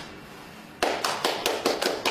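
A few people clapping by hand: fast, uneven, separate claps that start about a second in and keep going.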